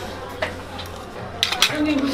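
A spoon clinking and scraping against a plate of food, with a cluster of sharp clinks about a second and a half in.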